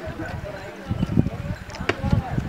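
Voices of people talking in the background, with a few low thumps about a second in and again near the end, and a sharp click near the end.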